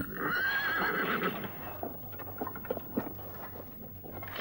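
A horse whinnies in one long wavering call lasting over a second, then hooves clop in scattered, uneven steps.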